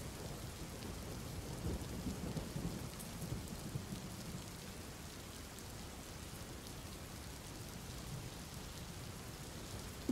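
Faint steady rain from a rain-sounds ambience track, with a low rumble of distant thunder in the first few seconds.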